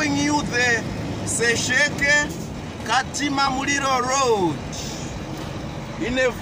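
A man talking inside the cab of a moving heavy truck, over the steady drone of its engine and road noise.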